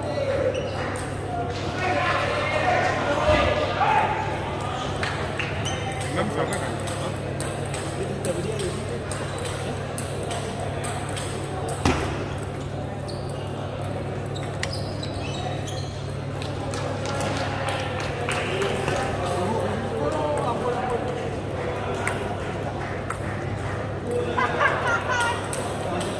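Table tennis ball clicking off bats and table during rallies, in short sharp ticks, with background voices and a steady low hum in the hall.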